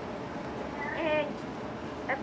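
A faint young voice giving one short, drawn-out word about a second in, rising then falling in pitch.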